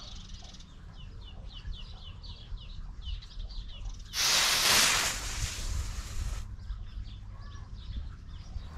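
Two clip-on fireworks igniters firing together on a single cue: a sudden hissing fizz about four seconds in that lasts a little over two seconds and stops abruptly. Both igniters lit, so the parallel pair worked. Birds chirp throughout.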